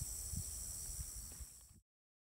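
Steady high-pitched insect drone over a low outdoor rumble, with a faint knock or two from the phone being handled. It fades out near the end and drops to silence.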